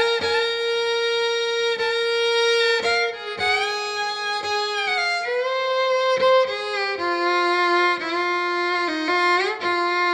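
Solo fiddle playing a slow intro: long bowed notes with vibrato, moving to a new note every second or two.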